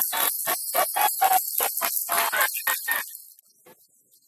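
Background music with a run of quick percussive hits, cutting off a little after three seconds in.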